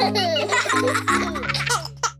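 Cartoon children's-song music with a small child giggling and laughing over it. The music settles on a low held chord near the end and fades out.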